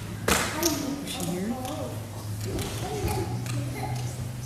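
Quiet, indistinct talking among children and adults in a large room, with one sharp knock about a quarter second in and a steady low hum beneath.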